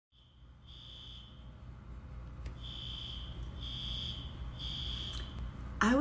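Fire alarm sounding high-pitched electronic beeps: one beep early, a pause, then three beeps about a second apart.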